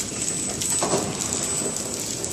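Horizontal flow-wrap packing machine running: a dense, continuous mechanical clatter of its feed and sealing mechanisms, with a steady high-pitched whine over it.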